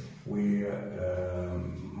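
A man's voice drawing out a long hesitation sound ('wa...'), held at a steady pitch.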